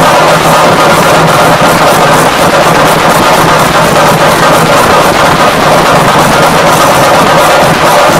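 Chenda melam: a group of Kerala chenda drums beaten with sticks in a fast, dense, continuous roll, with elathalam hand cymbals keeping time, very loud.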